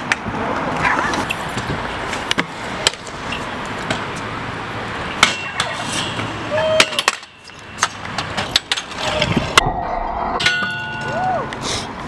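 Stunt scooter wheels rolling on a concrete skatepark, with sharp clacks of the deck and wheels hitting the ground scattered through the riding.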